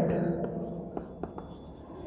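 Chalk writing on a blackboard: a few short, light ticks and scratches as letters are stroked out.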